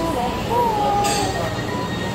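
Supermarket shopping cart rolling across a store floor, its wheels making a steady rumble with a brief wavering squeal, and a short metallic clink about a second in.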